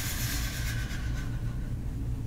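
A steady low rumble or hum of room background noise, with a faint hiss above it that fades out over the first second and a half.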